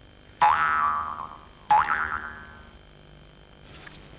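Two cartoon 'boing' sound effects about a second and a half apart, each a twangy plucked note that bends up in pitch at the start and then rings away.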